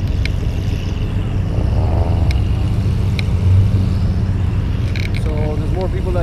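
Steady low rumble of a car, with a few faint clicks and distant voices over it.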